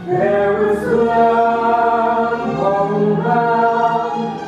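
A man and a woman singing a slow duet in long held notes, amplified through headset microphones.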